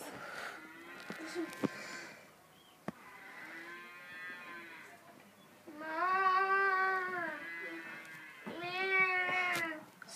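Cattle mooing from a trackside field: a series of long, drawn-out calls, the two loudest in the second half.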